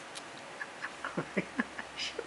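Boston Terrier puppy making a run of about six short, quick grunts in the second half, while shaking and tearing at a feathery toy.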